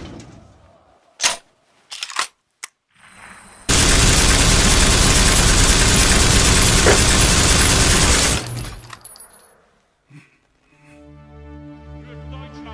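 A few sharp clicks, then a loud, sustained burst of automatic gunfire lasting about five seconds that cuts off abruptly. Music with a low bass line comes in near the end.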